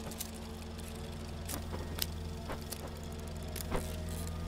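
Low, steady hum from an old hidden-camera recording, with a few faint scattered clicks of handling noise.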